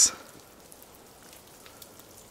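Snowmelt dripping from the trees onto snow: faint, scattered drops over a low hiss.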